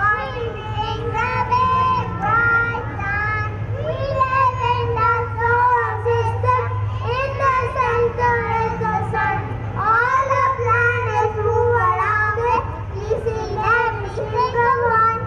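Young children singing a song, amplified over a stage sound system, with a steady low hum beneath.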